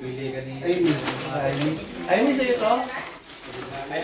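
People's voices in the room: wordless, drawn-out vocal sounds that rise and fall, with the loudest glide about two seconds in.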